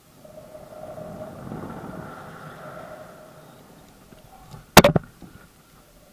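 Rushing air with a steady whistling tone as a rope jumper free-falls. It swells over the first couple of seconds and fades, then a sharp, loud double knock of the gear about five seconds in.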